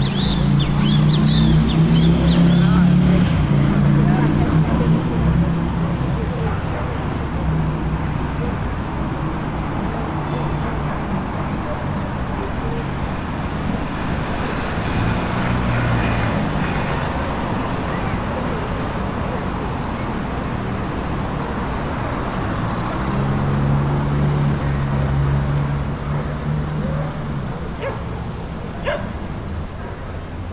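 City street ambience: traffic running on the street beside the plaza, with a heavy vehicle's low engine drone loudest in the first several seconds and again about three-quarters of the way through, and people's voices in the background.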